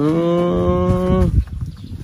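A cow mooing once: one long, steady moo lasting about a second and a half.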